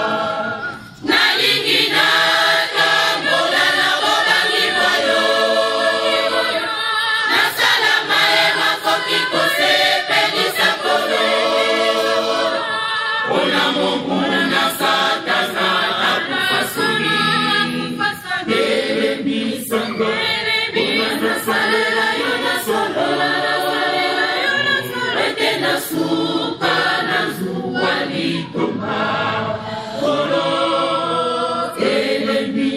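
Choir of women singing together, several voices at once. The singing drops off for a moment about a second in, then carries on without a break.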